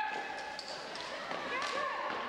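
Floor hockey play in a large gym: short squeaks of shoes on the floor and sharp clacks of sticks, amid shouting voices of players and spectators.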